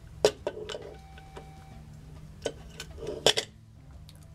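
Light metallic clicks and ticks, about six separate ones, as the blade carrier is pulled out of a vintage Twinplex stropper and the double-edge razor blade is unclipped from it. The loudest clicks come about a quarter second in and just after three seconds.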